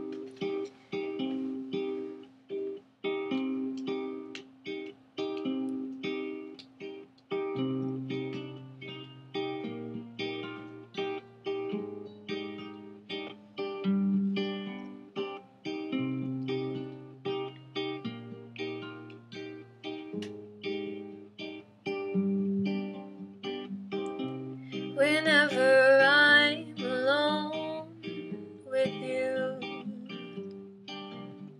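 Acoustic guitar picked in a steady repeating pattern of short notes over a moving bass line, as a song's intro. About 25 seconds in, a woman's voice comes in singing over it for a few seconds.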